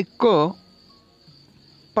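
Faint, steady high-pitched insect trill, as of crickets, continuing in the background through a pause in speech.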